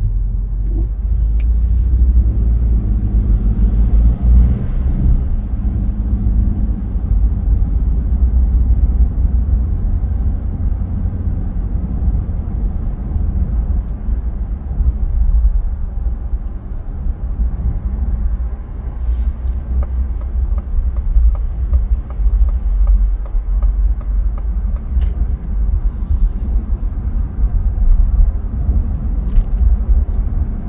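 A car driving in city traffic: a steady low rumble of road and driving noise.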